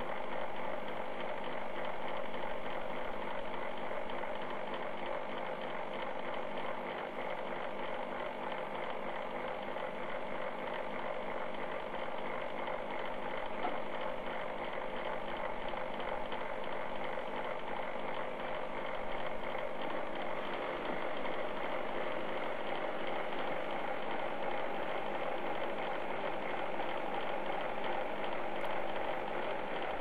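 Small metal lathe running steadily, its motor and drive giving a constant hum of several tones, as it spins glass tubing for a flame-worked joint, with a handheld butane torch burning against the glass.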